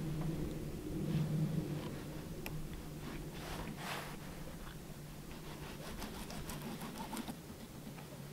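Fillet knife cutting and scraping through crappies on a plastic cutting board, faint scattered scrapes and small clicks over a faint low hum.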